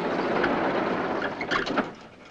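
Elevator's sliding door being rolled open by hand: a steady rumble that ends in a few sharp metallic clacks near the end.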